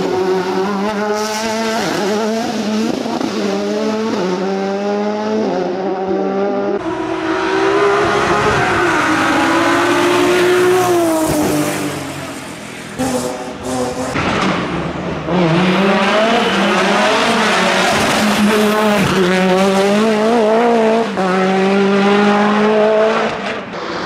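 Racing car engines revving hard up through the gears in several short clips one after another. The pitch climbs and drops sharply at each gearshift.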